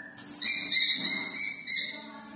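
Phone ringtone: a high, whistle-like electronic tone pulsing several times a second in a short stepped melody.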